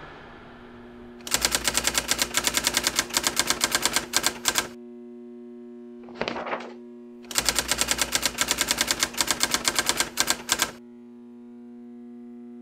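Typewriter sound effect: two runs of rapid key strikes, each about three seconds long, with a brief sound between them. A steady low drone hums underneath.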